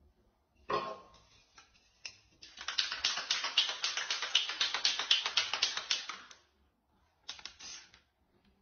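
Aerosol spray paint can spraying: a long, crackly, sputtering hiss lasting about four seconds, then a short second burst near the end.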